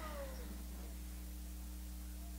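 Low, steady electrical hum under a quiet pause, with a faint, falling, meow-like cry in the first second.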